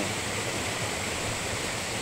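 Small mountain waterfall pouring into a rocky pool: a steady rush of falling water.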